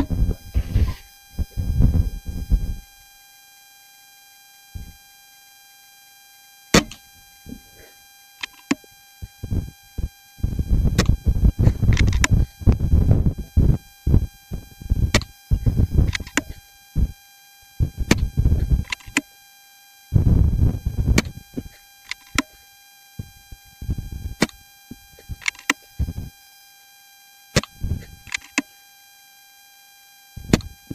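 Wind buffeting the microphone in irregular gusts, with a steady faint whine from a faulty microphone underneath. A single sharp click cuts through about seven seconds in.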